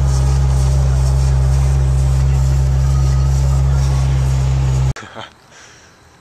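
Car engine running at a steady speed, heard from inside the moving car as a loud, even low drone that cuts off suddenly about five seconds in.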